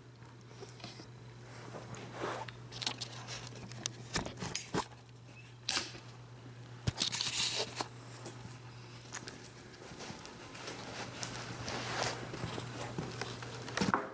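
Irregular crinkling and rustling, like plastic wrapping being stepped on or handled, with scattered knocks and steps, loudest a little past the middle. A steady low electrical hum runs underneath.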